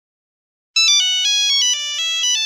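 A short electronic melody of quick, stepped high notes, starting just under a second in.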